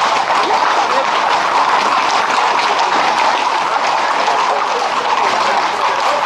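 Hooves of Camargue horses and black bulls clattering on a paved street as a tightly packed herd passes: a dense, steady clatter.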